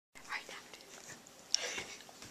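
A boy whispering close to the microphone, in two short breathy bursts.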